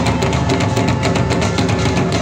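Live band music led by drums: a drum kit and hand drums playing a fast, steady beat, loud and unbroken.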